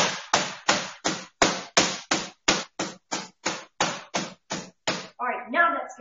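Meat mallet pounding a chicken breast under plastic wrap on a cutting board, flattening it thin enough to roll: a steady run of about three strikes a second that stops about five seconds in.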